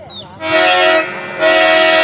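Harmonium accompaniment playing two long held chords of reedy, steady tone, starting about half a second in, with a short dip between them.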